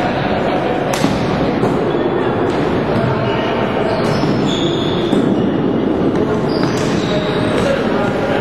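Floorball game in a sports hall: continuous mixed voices of players and spectators, with sharp knocks of sticks and the plastic ball against the floor or boards and a few short high-pitched calls.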